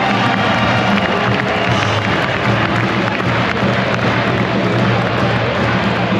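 Music playing loudly through a packed arena, over the noise of the crowd.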